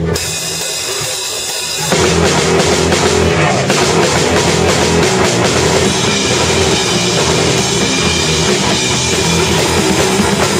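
Live rock band starting a song: a quieter intro of about two seconds, then the drum kit and guitar come in together and play on loud.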